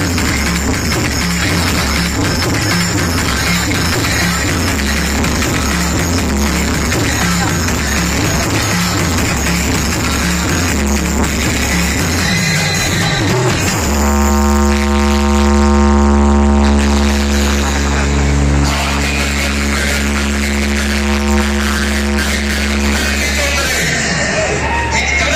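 Loud electronic dance music played through a large outdoor DJ sound system, with heavy bass. About fourteen seconds in, the beat drops out into one long, deep held synth tone that lasts about ten seconds before the music comes back in.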